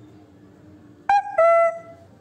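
Two short pitched tones just after a second in, the second lower and longer than the first.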